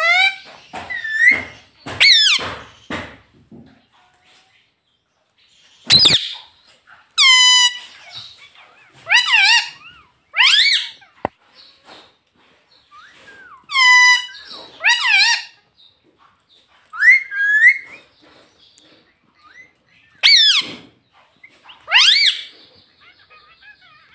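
Indian ringneck parakeet calling loudly: about a dozen short, high-pitched calls with swooping pitch, some coming in pairs, spaced by pauses of a second or more.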